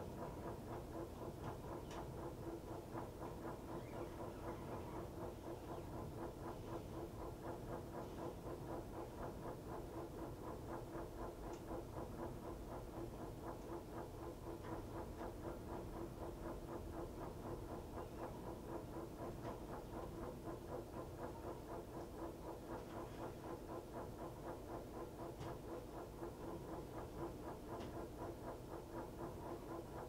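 Montgomery Ward top-load washer running mid-cycle: a steady mechanical hum with a fast, even pulsing, and a few faint ticks along the way.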